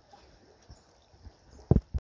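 Faint outdoor background broken by soft low bumps on the microphone, then two loud, short low thumps near the end, the sound of the phone being handled.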